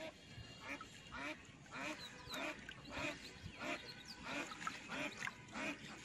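Short animal calls, repeated steadily about twice a second throughout.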